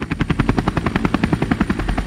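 Helicopter sound effect: rotor blades chopping in a fast, even beat of about a dozen strokes a second, with a thin steady high whine underneath.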